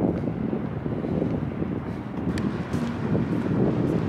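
Wind buffeting the camera microphone outdoors, a steady low rumble with no separate events.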